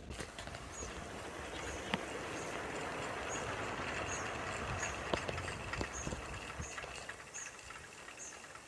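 Wind rushing past a small home-built wind turbine as its blades turn in a moderate breeze, a steady noise that swells in the middle and eases. A few light clicks and a faint high chirp about once a second sound over it.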